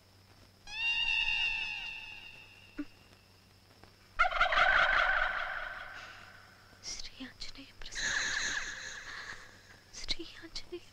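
Three high, warbling animal calls, about a second, four seconds and eight seconds in; the middle one is the loudest, and each fades away.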